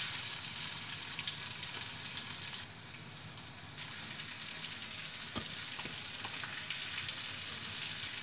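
Sliced ivy gourd (kovakkai) with onion and green chilli sizzling steadily in hot oil in a kadai. The sizzle drops a little about three seconds in, and there are a few light clicks of the steel ladle against the pan a little past the middle.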